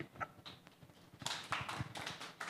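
Faint taps and rustling in a quiet room. They pick up a little about halfway through.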